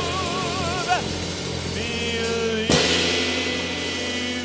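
Live blues band with piano and drum kit playing through a song's ending: a male singer's held note with vibrato stops about a second in, over sustained chords and a steady bass, and a cymbal crash comes about two-thirds of the way through.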